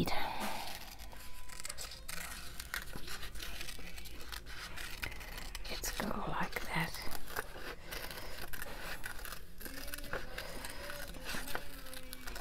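Small craft scissors snipping through printed paper in many short cuts, with the crackle of the paper being turned, as a flower is fussy cut around its outline.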